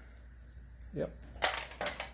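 Two sharp clicks of hard plastic as a handheld CB microphone is handled and set down, the first the louder, about half a second apart.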